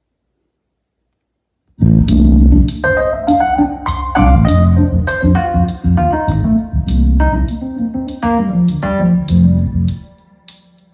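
Funk-jazz backing track of bass and keyboards with no drums, at 100 BPM, played loud from a phone through a QSC CP8 powered PA speaker and a Bose Sub1 subwoofer, with heavy bass. It starts suddenly about two seconds in, after silence, and reads about 105 dBA on a sound level meter.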